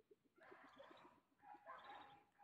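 Near silence: faint outdoor garden ambience with a few faint, distant animal calls.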